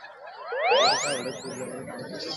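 Comedy sound effect: several rising pitch sweeps, one after another, each climbing quickly from low to very high, leaving a thin high tone held near the end.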